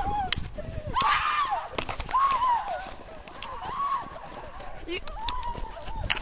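Young people yelling and whooping in short, high-pitched calls, several voices one after another, with scattered crunching footsteps in snow as they run.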